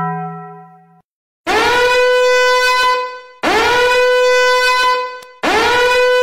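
Three long, identical horn blasts, each about two seconds, each sliding briefly up into a steady held pitch. A lower tone fades out during the first second, before the first blast.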